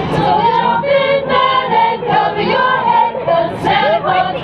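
Choir singing a Christmas carol, many voices together holding sustained notes.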